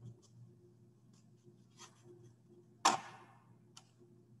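A few faint taps and clicks, with one sharper knock about three seconds in, over a low steady hum.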